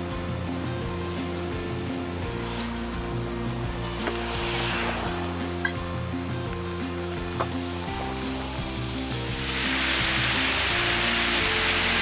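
Background music with slow, sustained chords. From about two-thirds of the way in, the rushing splash of a cascading water-wall fountain rises and grows louder toward the end.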